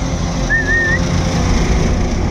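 A vehicle engine idling steadily with a low rumble. About half a second in, a single short warbling whistle sounds over it.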